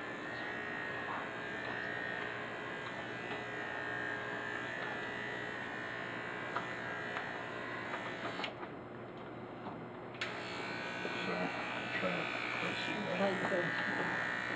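Corded adjustable electric hair clipper buzzing steadily as it cuts a mannequin's hair. The buzz sounds dulled for a second or two about two-thirds of the way through.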